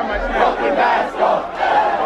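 A large crowd yelling, many voices overlapping at once.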